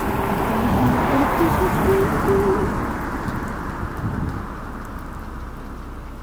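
Wind gusting over the microphone, strongest in the first half and easing off, with faint tones from the light show's radio broadcast under it early on.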